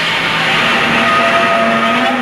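A loud, dense, noisy horror-style sound effect with a few held tones underneath, starting suddenly after silence and holding steady.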